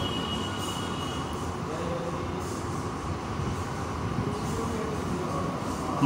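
Steady, even rushing noise of a room air cooler's fan running.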